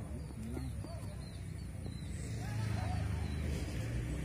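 Low rumble of a passing motor vehicle, growing louder from about halfway through, with faint distant voices.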